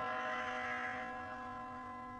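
Background music holding one long sustained note or chord that slowly fades.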